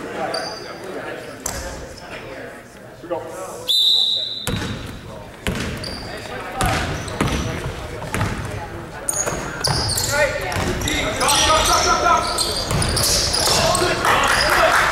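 Basketball game in a school gym: the ball bouncing on the hardwood floor among players' and spectators' voices, with short high squeaks now and then, all echoing in the large hall.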